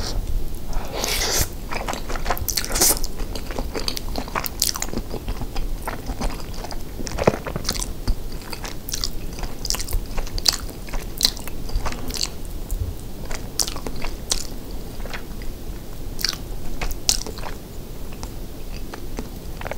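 Close-miked chewing of a soft, cheesy rice casserole with melted mozzarella: many wet, sticky mouth clicks and smacks, a few of them sharper and louder than the rest.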